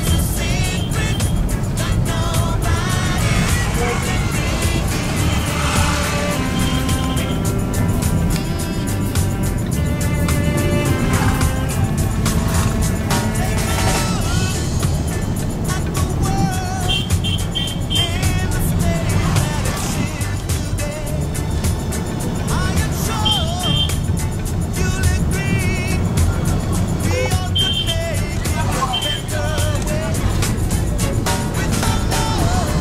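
Steady low rumble of a car's engine and road noise heard from inside the cabin, with music playing over it.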